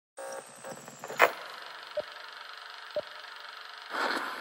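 Faint steady hum after a moment of silence, with a sharp click about a second in and two short beeps a second apart: recorded sound effects rather than music.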